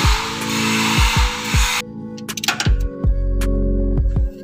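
Background music with deep drum hits and sustained held tones. A hiss over the music cuts off abruptly about two seconds in.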